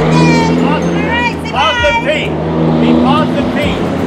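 Voices calling out in short rising and falling phrases, over a steady low hum typical of a vehicle engine idling.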